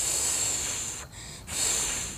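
Two rushes of breath-like hissing noise, each about a second long, with a short lull between.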